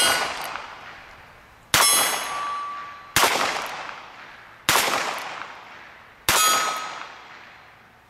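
Four shots from a Colt Frontier Scout .22 LR single-action revolver, about a second and a half apart, each trailing off in a long echo. Most are followed by the ring of a struck steel target.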